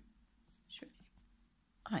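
Quiet room with a brief soft whispered breath from a woman about a second in; her speech starts right at the end.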